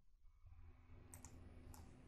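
Near silence: faint room hum with two faint computer mouse clicks a little after the first second, placing points while tracing a window in the software.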